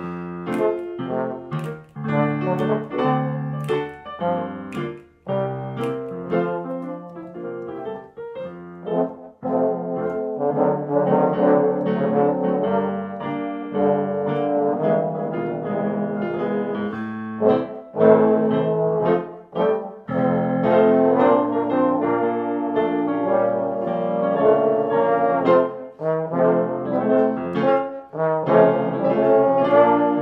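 A swing arrangement played by several multitracked trombones in harmony over piano. The first seconds are lighter, with sharp piano chords, and the fuller trombone section sounds from about a third of the way in.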